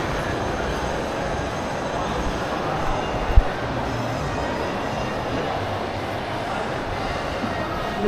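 Steady ambient rumble and hiss of a large indoor shopping mall, with a single short thump about three and a half seconds in.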